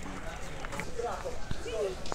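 Background voices of people talking, unclear words, with a few sharp clicks.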